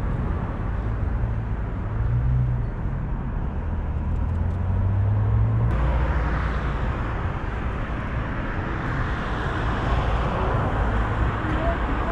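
Steady road traffic noise: a continuous rush of passing cars' tyres and engines, with a low hum, growing hissier about six seconds in.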